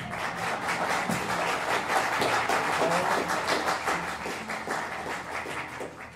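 Audience applauding, swelling in the first second or two and tapering off near the end.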